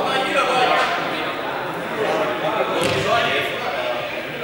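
Several people talking at once in a large echoing sports hall, their voices overlapping into indistinct chatter, with one brief louder sound about three seconds in.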